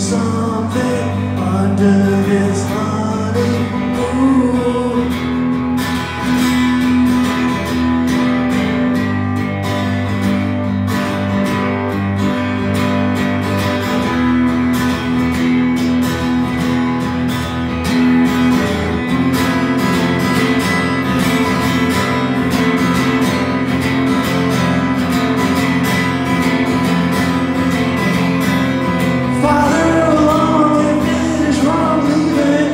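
Acoustic guitar played live, a steady strummed passage without words.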